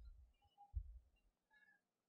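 Near silence, with a few faint low thumps about a second apart.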